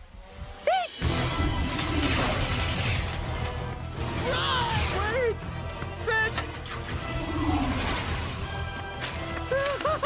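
Animated-film chase soundtrack: loud dramatic music bursts in about a second in, with crashing effects and characters' frightened yelps and shrieks over it.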